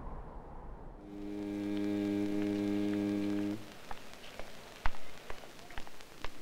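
A steady, low, buzzy hum fades in, holds for about two and a half seconds and cuts off abruptly. Scattered sharp clicks and pops follow, one of them much louder, near the end.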